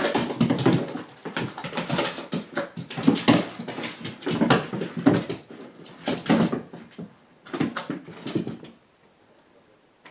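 A cat's paws pattering and claws scrabbling on a painted wooden floor and a woven mat as it darts and pounces after a spot of light: quick irregular knocks and scratches, busy for the first six seconds, then a few scattered bursts, then quiet near the end.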